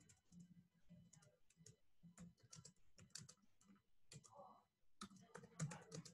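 Faint, irregular clicking of typing on a computer keyboard.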